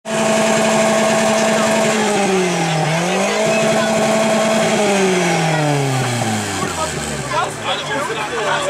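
VW Golf II with an aftermarket exhaust, revved while stationary. It is held at high steady revs, dips briefly about three seconds in, climbs back, then falls away steadily toward idle over the last few seconds.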